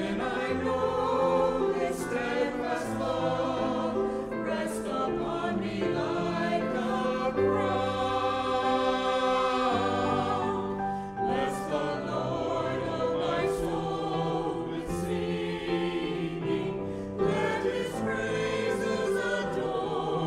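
A small mixed church choir of men's and women's voices singing a slow choral anthem in sustained chords.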